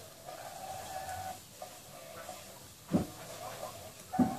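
Nursing puppies making a steady thin whine that breaks off briefly about one and a half seconds in, with one loud thump about three seconds in.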